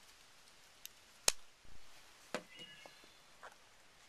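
Small folding knife with a liner lock, a Kershaw Half Ton: a single sharp metallic click about a second in as the blade is closed, followed by a few lighter clicks and taps with a brief high ring as the closed knife is handled and set down.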